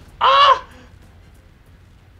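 A single short, loud, harsh caw-like call about a quarter second in, its pitch rising and then falling.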